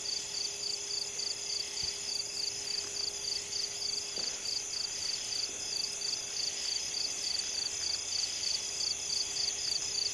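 Night-time crickets chirping in a steady, even rhythm of about three high chirps a second over a constant high-pitched insect hum, with a faint steady low hum underneath.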